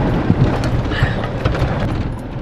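Inside the cab of a Chevrolet pickup while it drives: a steady low rumble of engine and road noise, with a few scattered knocks and rattles.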